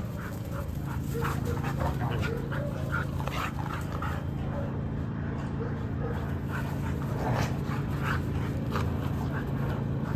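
Two dogs playing, with short, scattered yips and whines over a steady low hum.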